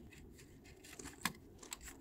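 Faint small clicks and taps of a plastic wheel trim being pressed and clipped onto a car wheel, with a couple of sharper clicks a little after a second in.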